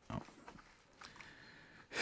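A man's short "oh", then a faint chuckle breathed out through the nose.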